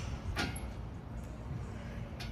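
A short sharp sound about half a second in as a man jumps up and grabs a steel pull-up bar for a muscle-up, over a steady low rumble.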